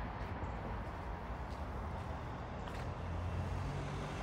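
Steady low background rumble with no distinct event; a low hum grows a little stronger about three seconds in.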